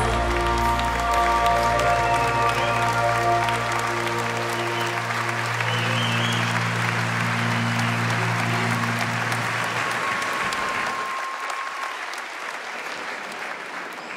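Congregation applauding as a live band's final chord rings out and fades away. After about ten seconds the music has died and only the applause goes on, thinning toward the end.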